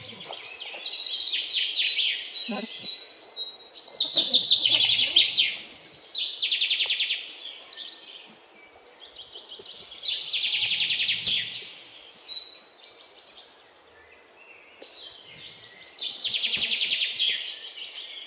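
Birds chirping and trilling in repeated bouts a few seconds long, with short quieter gaps between them; the loudest bout comes about four seconds in.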